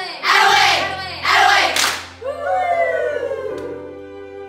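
A group of young women shouting together in unison, loud calls about a second apart, ending in a high shriek of cheering that trails off and falls in pitch, over soft background music.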